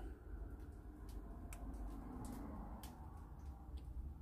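A few faint, short clicks from the Wurkkos HD20 torch's switch as it is cycled down to its lowest mode, over quiet room tone with a low hum.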